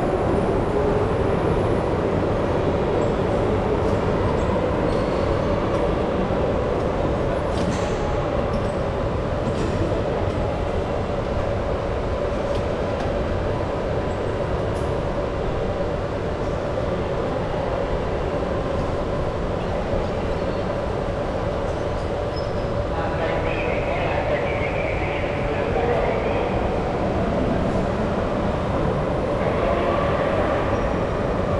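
A steady, loud mechanical drone with a humming tone, with faint voices in the background near the end.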